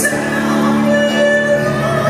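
Live symphonic metal band with a female soprano lead vocalist singing over the music, holding long sustained notes, recorded from the audience.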